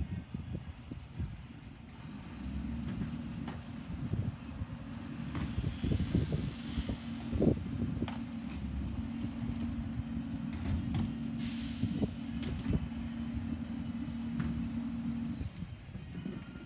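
International Heil Durapack 5000 rear-loader garbage truck running in the distance, with a steady whine that starts a couple of seconds in and cuts off near the end. Gusts of wind buffet the microphone throughout.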